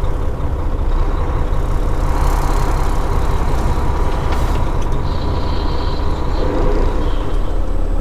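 Semi truck's diesel engine running steadily at low speed, a deep, even rumble heard from inside the cab.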